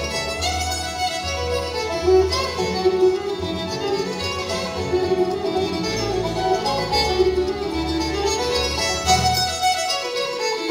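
Live bluegrass band playing an instrumental tune: fiddle leading the melody over banjo, guitar and mandolin, with upright bass plucking a steady low pulse.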